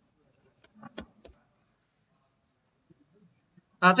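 Quiet room tone broken by a quick run of about four short clicks about a second in, from keys or a mouse being pressed at a computer, before a man starts speaking near the end.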